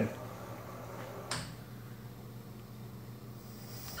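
Servo motors and drives of a LinuxCNC-retrofitted knee mill humming steadily while the machine runs, with a single short knock about a second in.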